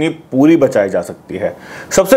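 A man speaking Hindi, then a quick breathy intake of breath near the end.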